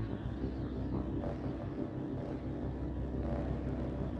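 Dark ambient noise drone: a steady, low rumbling bed with a dense hum underneath and no distinct events.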